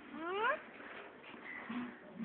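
A single short cry that rises steadily in pitch for under half a second, just after the start, then fainter scattered sounds.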